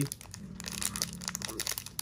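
Foil trading-card pack wrapper crinkling as it is held and flexed in the fingers: a run of small, irregular crackles.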